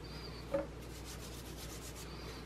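Hands pressing and sliding pastry dough across a floured stone countertop, a faint dry rubbing with one short soft knock about half a second in.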